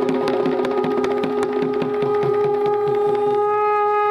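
A conch shell blown in one long, steady note, over a fast beat of Sri Lankan two-headed hand drums.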